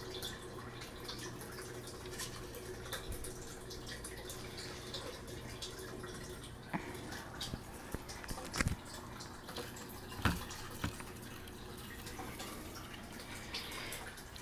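A steady low hum with a few scattered light clicks and knocks, the clearest bunched a little after the middle.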